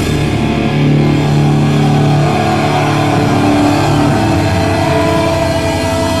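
Heavy metal band playing live, electric guitars holding sustained chords that ring out without drums, with a steady high tone coming in about five seconds in.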